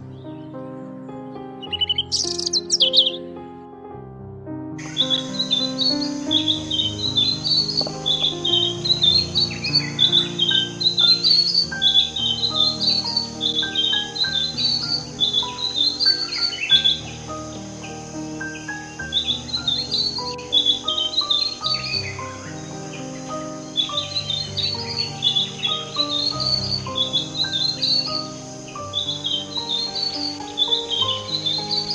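A robin singing over soft instrumental background music. One short high call comes about two seconds in. From about five seconds on, a continuous run of rapid, high chirping phrases follows, with a faint recording hiss behind them.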